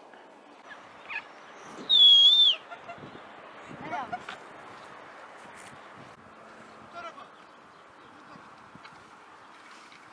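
A single loud whistled call lasting under a second, its pitch wavering, about two seconds in, over a steady open-air background with a few fainter calls.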